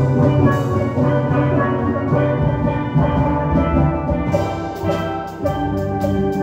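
A steel band playing: several steelpans ring out the melody and chords, with a drum kit keeping the beat. Crisp, even cymbal or hi-hat strokes come in over the second half.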